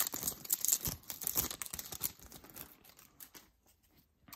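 Foil Yu-Gi-Oh! booster pack wrapper crinkling and tearing as it is opened by hand. The crackle is dense at first and dies down about two seconds in.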